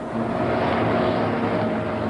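A steady rumbling noise with a few faint held tones underneath, starting abruptly just before the song begins.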